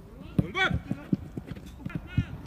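A sharp thud of the football about half a second in, followed at once by a short shout, then players' footsteps thudding on the artificial turf as they run.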